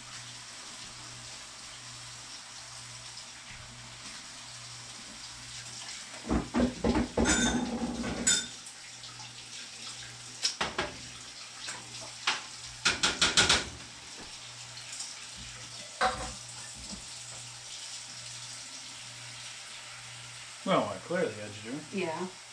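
Clinks, knocks and scrapes of a metal utensil and a sauce jar on a pizza pan as pizza sauce is spread over the dough, coming in short clusters over a steady low hum and hiss.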